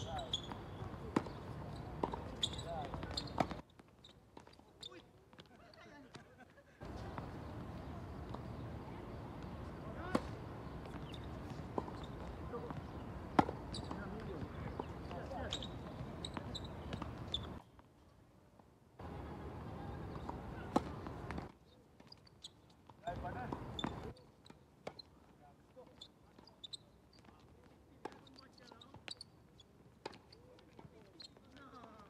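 Tennis balls struck by rackets and bouncing on a hard court during doubles rallies: sharp pops spaced a second or two apart, over a steady background hiss that drops out several times.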